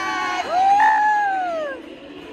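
A high-pitched voice holding a long cheering call that stops about half a second in, then a second long call that rises and then falls away, over the noise of a cheering crowd.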